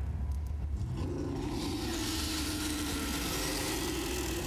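Lion roar sound effect played through a stadium's loudspeakers, a deep, drawn-out rumbling roar that grows fuller about a second in.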